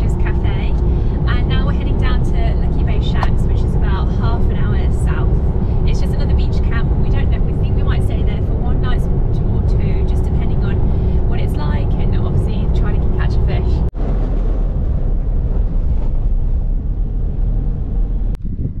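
A woman talking over the steady engine and road rumble inside a moving Toyota Hilux's cabin, with a steady hum beneath. About 14 s in the sound cuts to steady tyre and road noise from driving on a gravel road.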